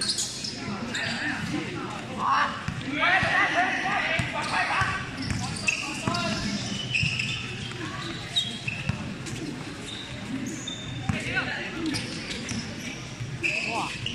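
Sounds of a basketball game in play: the ball bouncing on the court, short high squeaks from the players' shoes, and players and onlookers calling out, loudest a few seconds in.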